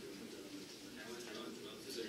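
A man's voice talking in a recorded video played through the room's speakers, faint and roomy.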